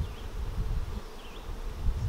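Honey bees buzzing around the hives in an apiary, a steady hum, over a low uneven rumble.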